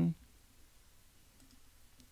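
A single faint computer mouse click a little over a second in, over low room tone.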